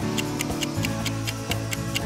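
Quiz countdown timer ticking, about four ticks a second, over light background music.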